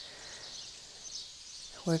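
Quiet background: a faint, steady hiss of ambient noise. A woman's voice starts speaking near the end.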